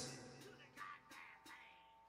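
Near silence: the last faint, fading tail of a guitar, bass and drums piece, with a few soft ticks, dying away.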